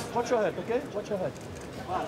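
A boxing referee's voice, fainter than the commentary, giving a fighter a verbal warning. It is heard mostly in the first second, over arena background noise.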